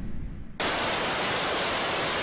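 A news-graphic whoosh with a low rumble dies away. About half a second in, it cuts abruptly to a steady, loud, hiss-like roar: the rocket exhaust of a ballistic missile lifting off.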